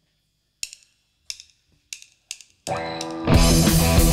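A rock drummer's count-in of four sharp clicks, evenly spaced at a bit under two per second. An electric guitar then starts alone, and the full band comes in loud just after, with drums, bass and distorted electric guitars.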